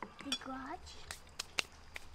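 A spoon clicking and clinking several times against a salad bowl as the salad is scooped up, with a brief faint murmur of a voice near the start.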